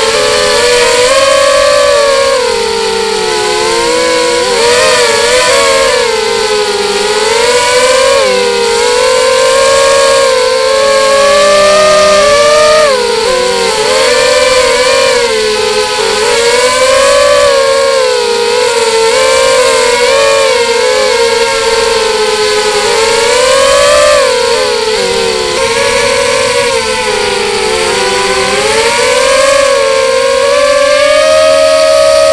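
X-bird 250 FPV quadcopter's brushless motors and propellers whining steadily and loud, the pitch rising and falling continuously as the throttle changes in flight.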